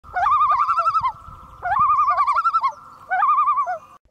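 A warbling animal call with a fast wavering pitch, repeated three times, each call lasting about a second and opening with an upward swoop.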